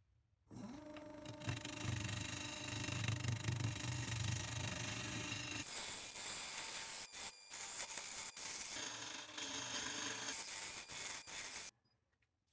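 Wood lathe running while a turning tool cuts into a spinning wood-and-resin pendant blank, a continuous rough scraping and cutting noise over the lathe's low motor hum. It starts abruptly about half a second in, breaks off briefly a few times, and stops suddenly near the end.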